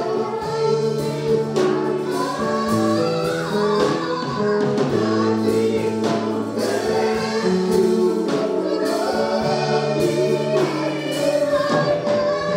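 A gospel worship team singing a praise song together in harmony, with several voices holding long notes, over a live band whose drums keep a steady beat.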